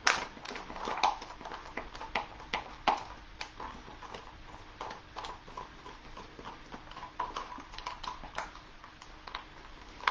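Quick, irregular clicking and tapping as cinnamon is stirred into silicone in a disposable container, the mixing tool knocking against the container. The taps are louder for the first few seconds, then go on more faintly.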